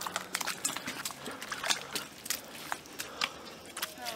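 A dog walking through wet mud, its paws making irregular small clicks and wet noises.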